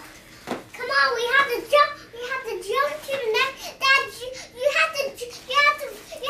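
A young girl's high-pitched voice in a steady run of short sing-song phrases without clear words.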